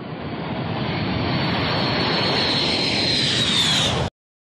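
Jet roar of a MiG-31 interceptor's twin turbofan engines as it passes over the airfield, swelling over the first second or two and then holding steady, with a high whine that slowly drops in pitch near the end.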